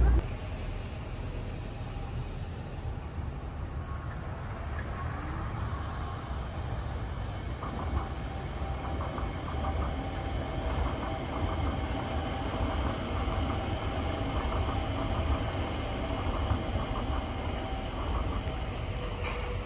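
Disney Resort Line monorail train running along its elevated track overhead: a steady low rumble, joined about eight seconds in by a steady motor whine as the train passes close by.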